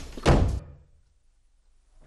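A door shutting with a single heavy thud about a third of a second in.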